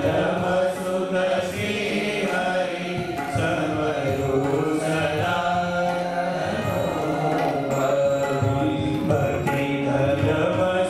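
A congregation singing a Hindu devotional chant together, in long held notes.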